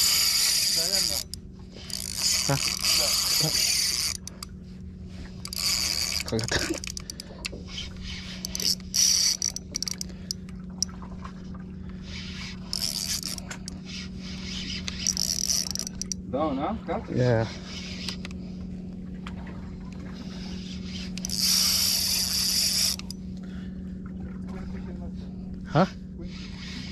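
Shimano Vanford 4000XG spinning reel working during a fight with a hooked fish, in repeated bursts of a second or two of whirring and ratcheting as line goes out and is wound back, over a steady low hum.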